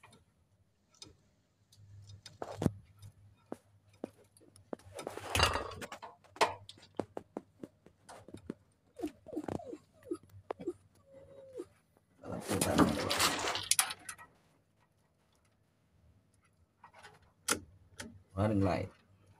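Lineman's pliers and a bundle of electrical wires being worked: scattered sharp clicks and snips, with two louder rustling bursts of about a second each. A few short whining sounds come in the middle.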